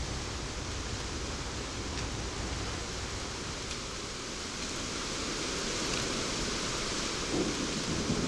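Steady rushing outdoor ambience, an even hiss like wind, with no distinct bird calls.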